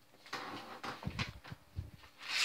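A paper card envelope being torn open and rustled by hand. The rustling comes in short bursts, with a couple of dull bumps from handling.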